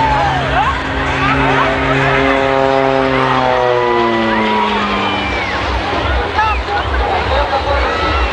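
Embraer T-27 Tucano turboprop passing overhead: its steady propeller drone falls in pitch between about three and five seconds in as the plane goes by. Spectators chatter throughout.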